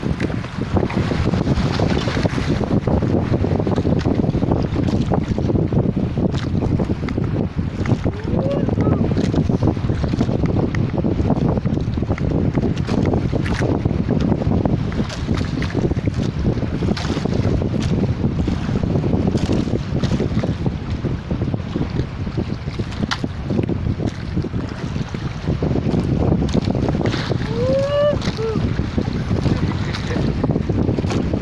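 Steady wind buffeting the microphone over the sound of water against a small boat at sea. Two short rising tones sound about eight seconds in and again near the end.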